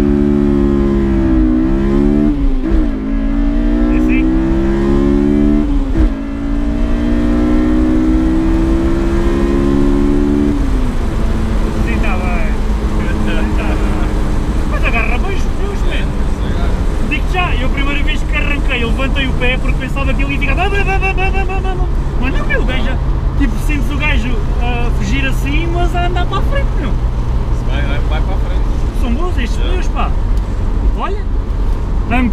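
Honda S2000's four-cylinder VTEC engine heard from the cabin under hard acceleration: the revs climb high, drop sharply at two quick upshifts and climb again, then fall away as the driver lifts off about ten seconds in. After that the engine and road noise carry on as a steady lower drone while cruising.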